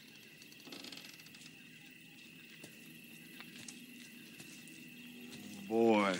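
Faint night-time outdoor ambience: a steady, high insect drone, with a brief soft rustle about a second in. A man's voice starts just before the end.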